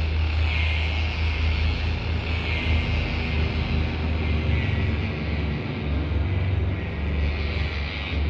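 Dark background music: a steady low droning rumble, with a higher hiss swelling about every two seconds.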